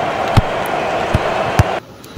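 Computer-generated stadium crowd noise from a virtual football match, with three dull thumps of the ball being kicked. The crowd noise cuts off suddenly near the end.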